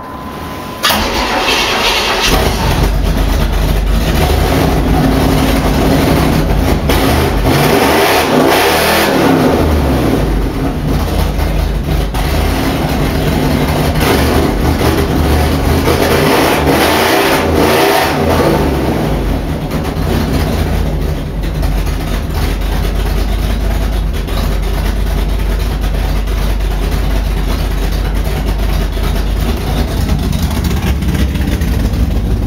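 1989 Pontiac Trans Am GTA's built 383 stroker V8 cranking and firing about a second in, then running at a steady idle. It is blipped up and back down twice, around a third of the way in and again past the middle.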